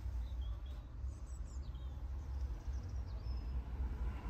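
Faint bird chirps, a few in the first second and a half and one more later, heard from inside a car cabin over a steady low rumble.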